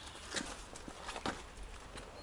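Three or four faint clicks and knocks, short and spaced apart, over a low steady hiss.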